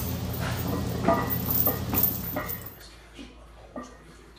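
Lifting chains hung from a loaded barbell clinking and jangling as a squat is finished, over background music and short shouts. The sound drops abruptly a little under three seconds in, leaving only faint clicks.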